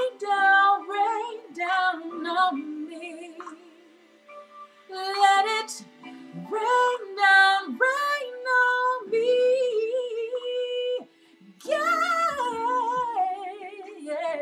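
A woman singing solo: long held notes and runs up and down in pitch, with no clear words, over steady backing music.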